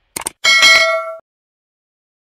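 Two quick mouse-click sound effects, then a bright notification-bell chime that rings for under a second and cuts off.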